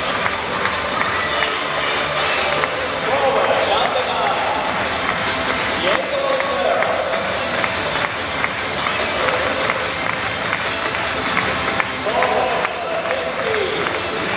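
Stadium player introductions over the public-address system: music from the loudspeakers with a voice calling out, and the crowd responding. The voice comes in several swells, about three, four, six and twelve seconds in.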